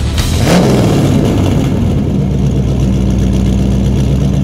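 Vehicle engine sound effect: a quick rev that sweeps up about half a second in, then a steady low idle.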